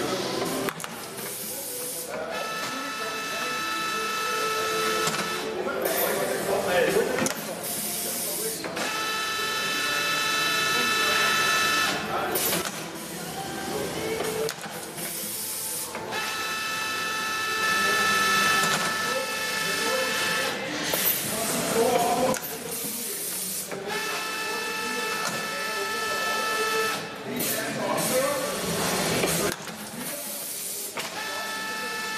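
Two-head automatic pouch filling machine running its fill cycles: four times, a steady whine holds for about three seconds while a pouch is filled. Short hisses and clicks of its pneumatics come between the fills.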